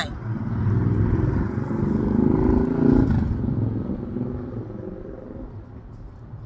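A motor vehicle drives past. Its engine rumble builds to a peak about three seconds in and then fades away.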